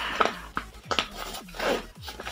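Zipper on a fabric laptop bag's pocket being pulled open in a few short rasps.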